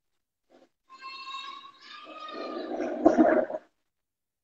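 A high-pitched, drawn-out cry lasting about three seconds. It grows louder and rougher toward its end, then cuts off.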